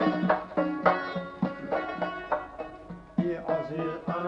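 Uzbek Khorezm folk music: plucked string instruments playing a run of notes over a steady low held note.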